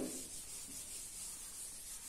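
Chalkboard being wiped clean, a steady rubbing hiss of the eraser over the board's surface.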